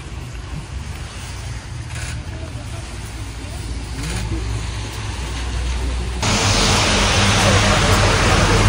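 Outdoor background noise: a low steady rumble with faint indistinct sounds during a silent pause in the prayer. About six seconds in it switches abruptly to a louder, even hiss.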